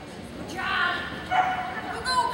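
Pyrenean Shepherd barking twice during an agility run, two short high barks about half a second and a second and a half in.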